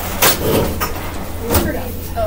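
Classroom room noise: indistinct voices over a steady low hum, with two brief clattering knocks, one about a quarter second in and a louder, lower one about a second and a half in.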